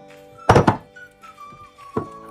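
A wire whisk knocking against a glass mixing bowl: a quick cluster of sharp knocks about half a second in, and one more knock near the end. Background music with a whistled melody plays underneath.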